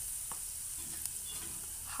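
Onions, green chillies and ground spices frying in hot oil in a pan: a steady, low sizzle, with a couple of faint clicks.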